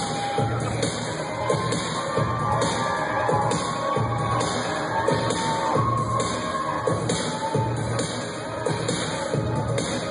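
Loud live electro-industrial music over a concert PA, with a steady driving electronic beat, recorded on a phone in the audience, with crowd cheering mixed in.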